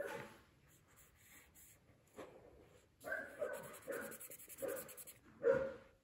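A chimpanzee calling: a run of about five short calls in the second half, after a quieter stretch with one click about two seconds in.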